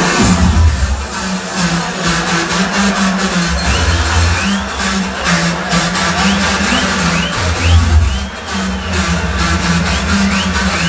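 Electronic dance music from a DJ set, played loud with a heavy, shifting bass line under a steady beat. Short rising high-pitched chirps recur through the second half.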